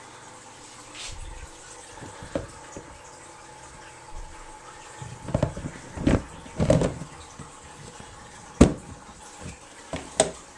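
Handling noise from a handheld camera being moved about: rustling and a cluster of bumps about five to seven seconds in, then one sharp knock a little before nine seconds, over a steady water-like background hiss.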